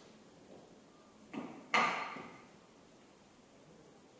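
Two knocks, the second louder with a short ringing tail: a gas burner being handled and set on the lab bench.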